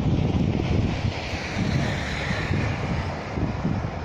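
Wind buffeting the microphone in uneven gusts, a low rumble strongest in the first second that eases toward the end, with a faint hiss behind it.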